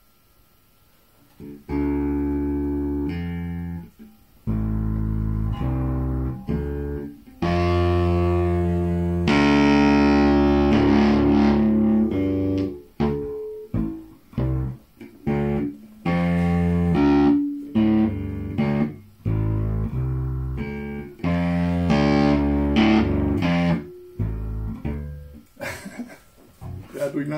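Electric bass guitar played through an amplifier: after a moment of quiet, a long phrase of plucked notes, some held and ringing, others short and clipped.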